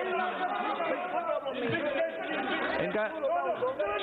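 Many voices talking over one another at once: a commotion of overlapping chatter.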